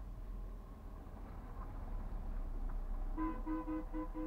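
A truck's engine growing louder as it approaches. Near the end comes a quick run of about six short horn-like beeps.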